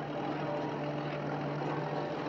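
Drilling rig running: a steady, loud mechanical rush of machine noise that starts and stops abruptly with the footage, over a low steady drone.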